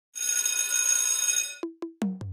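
Logo sound effect: a high, shimmering, bell-like trill of many ringing tones for about a second and a half, then two short, low plucked notes.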